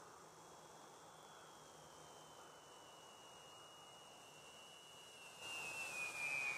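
Faint, thin high-pitched whine of a Freewing B-17 RC model's four electric motors and propellers on landing approach, slowly dropping in pitch. It grows louder near the end as the plane comes in low over the runway.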